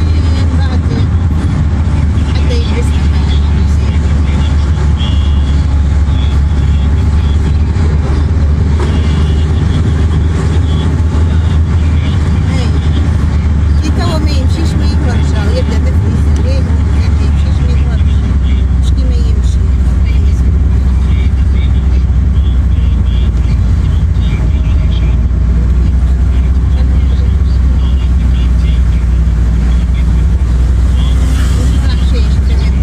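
Car cabin noise while driving: a loud, steady low rumble of engine and road heard from inside the car.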